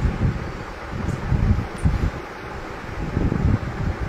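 Air buffeting the microphone: irregular low rumbling gusts over a steady hiss.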